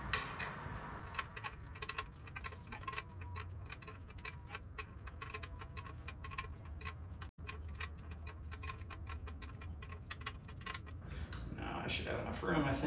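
Ratchet wrench clicking in quick, irregular runs as it is worked back and forth on a nut or bolt at the motorcycle's front axle and fork, over a faint steady hum.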